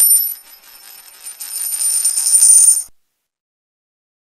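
A rattling, jingling sound effect with steady high ringing tones. It grows louder over about three seconds and then cuts off suddenly into silence.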